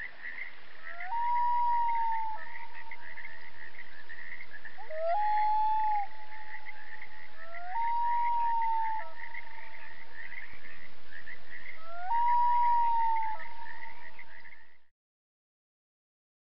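Wildlife ambience: a continuous chorus of rapid, high chirps, with four long calls that rise sharply and then hold steady. It fades out about a second before the end.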